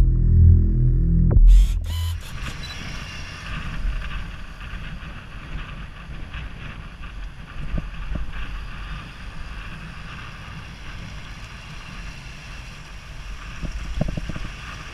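A short end of intro music, cut off with a click about two seconds in; then steady road-traffic noise with wind buffeting the microphone of a moving camera.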